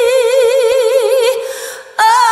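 Female voice holding one long sung note with strong, even vibrato, fading away about a second and a half in; a new note starts at the very end.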